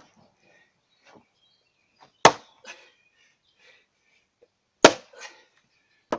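A lighter splitting maul striking the edge of a log: two sharp blows about two and a half seconds apart, each followed shortly by a smaller knock of wood.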